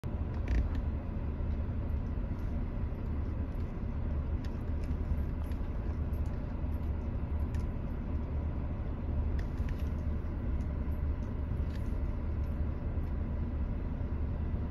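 Steady low hum of an idling car, with a few faint clicks.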